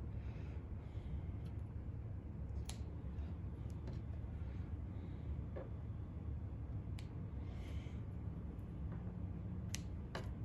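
Small scissors snipping thread tails: a few sharp, separate snips spread out over a steady low hum.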